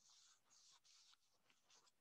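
Near silence, with only faint soft scratches of a pencil and hand moving over paper.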